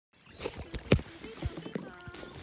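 Kayak paddling on a lake: a few sharp knocks, the loudest about a second in, over a low wash of water, with faint voices near the end.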